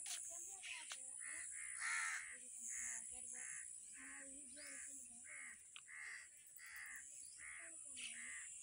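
Birds cawing faintly and repeatedly, short harsh calls about two a second, over a steady high-pitched hiss.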